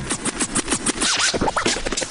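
DJ scratching a record on a turntable: rapid back-and-forth strokes with rising and falling sweeps, with no bass beat underneath.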